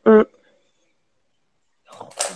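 A woman's short 'mmh' of agreement, then silence; a faint breathy hiss begins near the end.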